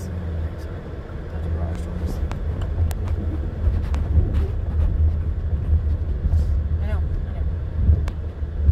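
Car driving slowly, heard from inside the cabin: a steady low road-and-engine rumble with a few light clicks.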